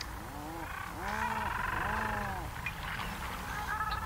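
Seabirds calling: three drawn-out calls about a second apart, each rising and then falling in pitch.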